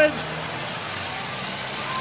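Stripped-down Model T Ford's four-cylinder engine running as it laps the track, heard under a steady noisy background.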